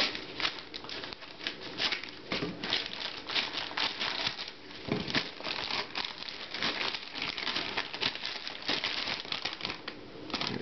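Clear plastic wrapping crinkling and rustling in irregular bursts as a netbook is pulled out of its packaging and freed from the wrapper, with a few soft handling knocks.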